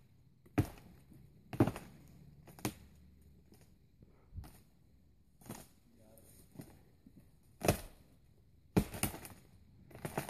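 A standing dead tree trunk being shoved back and forth: a series of sharp wooden knocks and cracks, about one a second, as it rocks under each push. The last two knocks are among the loudest.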